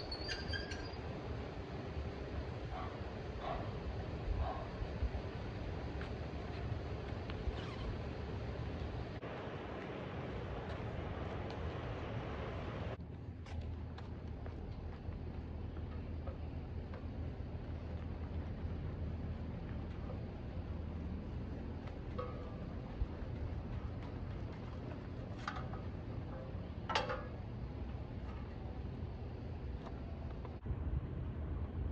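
Faint steady low rumble of outdoor background noise, with a few brief, faint clicks and chirps in the second half.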